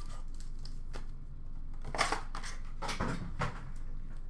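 Cardboard trading-card box and foil packs being handled on a glass counter: light scratchy rustles and small taps, with one louder rustle about halfway through.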